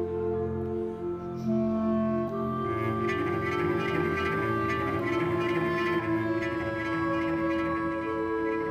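Orchestral score for bowed strings, led by a cello, playing long held notes that change every second or two. The texture grows fuller from about three seconds in.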